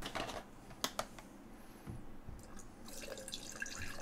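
A few light clicks, then faint coolant trickling and splashing out of an open fitting on an Enermax NeoChanger pump-reservoir combo onto the desk, building up near the end.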